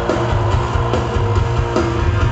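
Rock band playing live through a large outdoor PA, heard from the crowd: electric guitar, bass guitar and drum kit playing loudly together, with a heavy, boomy low end.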